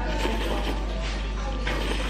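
Slurping of a single long noodle, in a couple of short sucking pulls, over background music.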